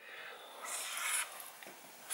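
Faint rubbing of a dry-erase marker tip on a small whiteboard slate: a short stroke just after the start, then a longer stroke of about half a second near the middle.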